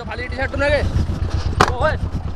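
Short bursts of a man's raised voice during a roadside quarrel, twice, over a steady low rumble.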